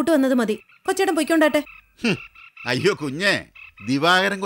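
Frogs croaking in a run of repeated calls, each about half a second long, with gaps between them.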